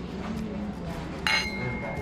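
Two stemmed wine glasses clinking together in a toast. A single bright clink comes just past a second in and rings on with a clear high tone for most of a second.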